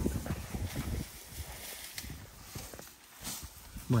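Cattle shuffling on dry, dusty ground: a run of short hoof knocks and scuffs in the first second, then a few scattered clicks and rustles.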